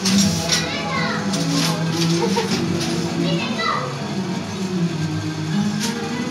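Children's voices and chatter over background music with long held notes.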